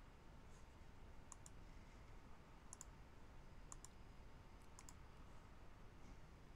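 Faint computer mouse clicks: four quick press-and-release clicks about a second apart, over low hiss.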